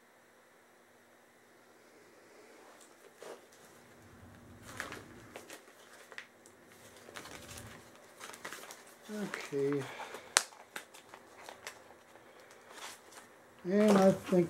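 Quiet crinkling of a plastic bag and small clicks of tools being handled as bagged needle-nose pliers are picked up, with one sharper click about ten seconds in. A short murmured voice comes around the middle, and speech starts just at the end.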